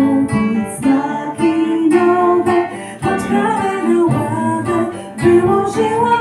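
Live song: a woman singing in Polish over two acoustic guitars strumming a steady accompaniment.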